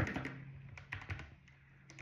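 Typing on a computer keyboard: a few separate, quiet keystrokes.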